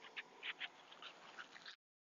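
Faint short high chirps from an animal, about six in a row at uneven spacing. The sound then cuts off suddenly to dead silence near the end.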